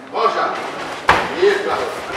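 Men's voices shouting, broken by a single sharp smack about a second in.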